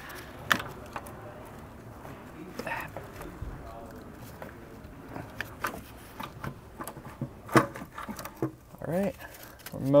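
Scattered light clicks and knocks of a plastic intake manifold being lowered and nudged into place on top of a V6 engine.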